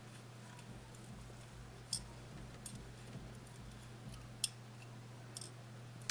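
A few faint, sharp clicks of a metal latch hook being worked through yarn, the clearest about two seconds in and again near four and a half seconds, over a low steady hum.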